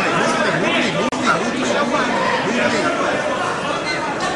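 Many overlapping voices of spectators talking and calling out around the mat, with a brief dropout in the sound about a second in.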